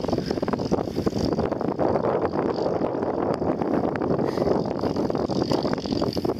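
Wind buffeting the microphone: a steady rushing noise with constant small gusts.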